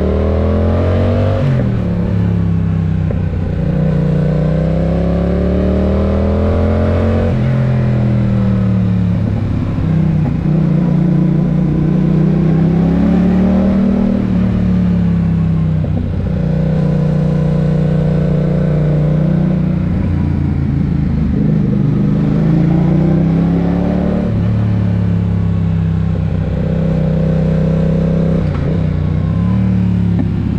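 Yamaha motorcycle engine under way, its pitch rising through several seconds of acceleration, dropping sharply at a shift or throttle-off, holding steady while cruising, then climbing again near the end.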